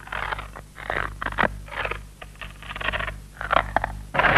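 A run of short, irregular scraping and hissing noises over a steady low hum on an old film soundtrack, like a sound effect of rock beginning to crumble.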